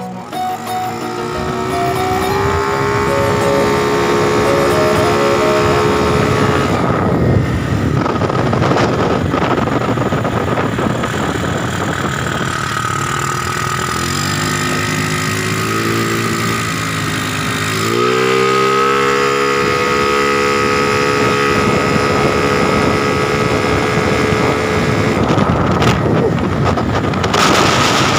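Honda Beat scooter's single-cylinder engine, running on a Yamaha RX King carburettor, pulling hard under way: its pitch climbs and then holds steady, twice, with a stretch of wind noise between the two pulls.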